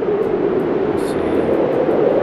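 A steady, unbroken low rushing drone: the ambient soundscape of the Apple Vision Pro's immersive Moon environment.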